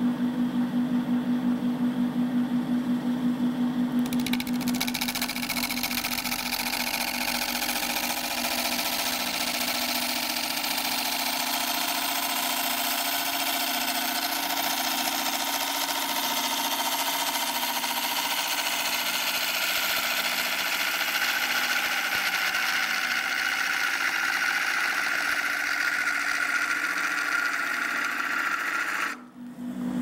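Wood lathe running while a 3/8-inch bowl gouge cuts the inside of a spinning bowl: a pulsing hum at first, then a steady hiss of the cut from about four seconds in. The cut stops about a second before the end, leaving the lathe's hum.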